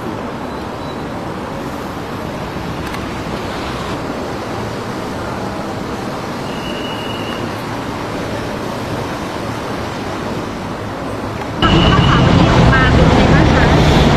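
Steady street traffic noise with a faint murmur of voices and a brief high tone about halfway through. Near the end the sound cuts suddenly to a louder, closer noise with voices.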